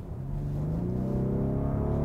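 Rolls-Royce Wraith's twin-turbocharged 6.6-litre V12 heard from inside the cabin under hard acceleration. The engine note rises steadily in pitch and grows louder.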